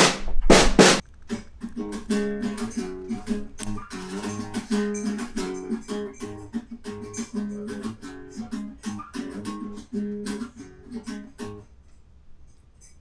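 A couple of loud drum-kit hits, then an acoustic guitar played by hand in a repeating, rhythmic chord pattern from about a second in until just before the end.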